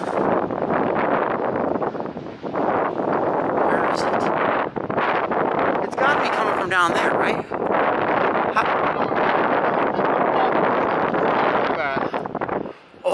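Wind rushing over the microphone, a loud, steady noise, with a brief wavering whine about seven seconds in.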